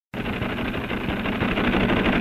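Train running fast: a steady, dense rushing clatter with a rapid even rhythm.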